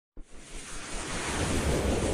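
Intro sound effect for an animated logo: a whooshing swell of noise over a deep rumble, growing steadily louder.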